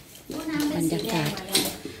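Speech only: a woman speaking a word or two of Thai in a small room.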